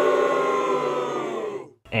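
A long, held pitched tone, like a siren or a drawn-out groan, that drifts slightly down in pitch and cuts off abruptly near the end: an edited-in sound effect.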